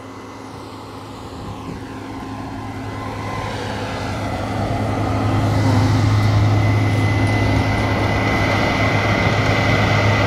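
Diesel engines of a Case IH tractor pulling a grain cart and a Case IH combine harvester running in a wheat field. They grow steadily louder as the machines pass close by, with a steady low hum and a thin high whine holding through the second half.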